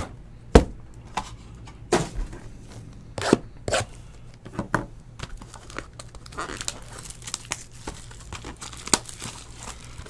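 A sealed box of trading cards being torn open and its wrappers handled: crinkling and tearing of cardboard and foil, with a sharp snap about half a second in and scattered clicks and taps after it.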